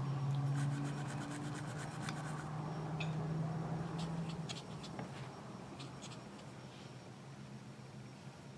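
An eyeshadow brush scratching in a pressed-powder eyeshadow pan and brushing over skin. There is a rapid fine scratching for the first couple of seconds, then scattered soft ticks, over a low steady hum that stops about halfway through.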